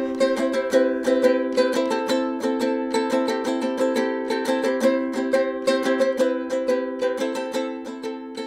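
Ukulele strummed in quick, even strokes, several a second, playing a repeating chord pattern.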